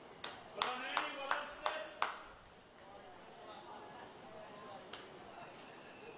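Six sharp hand claps, about three a second, in the first two seconds, with a voice calling over them. Then faint voices of players and spectators around the pitch.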